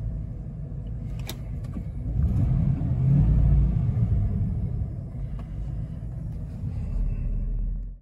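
1995 Ford Bronco XLT's V8 engine, heard from inside the cab, idling and then revved once to a little over 2,000 rpm about two seconds in before it settles back to idle.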